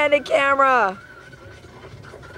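A person's voice calling out with a drawn-out, falling pitch that stops about a second in, followed by faint background noise.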